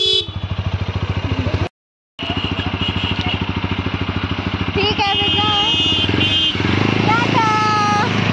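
Motorcycle engine idling with a fast, even low pulse, cut off for about half a second near two seconds in. Voices call out in drawn-out tones over it from about five seconds in.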